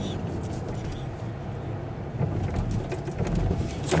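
Volkswagen car driving along, heard from inside the cabin: a steady low rumble of engine and road noise.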